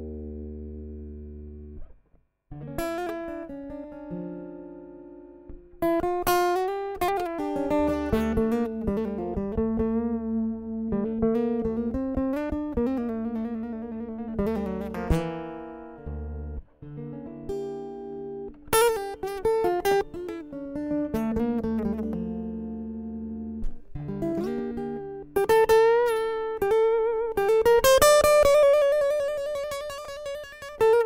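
Solo guitar in an alternate (hybrid) tuning, played live as the instrumental opening of a song: plucked notes and chords ringing and changing, with a short break about two seconds in.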